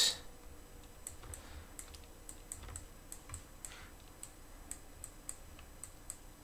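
Faint, irregular clicking of a computer mouse and keyboard, roughly two clicks a second, over quiet room tone.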